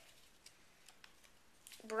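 Faint handling of a freshly opened stack of football trading cards: a few light, scattered clicks and ticks of card edges.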